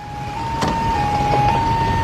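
Ambulance siren alternating between two tones, switching about every half second, over the low rumble of the vehicle's engine and road noise, growing louder as it approaches.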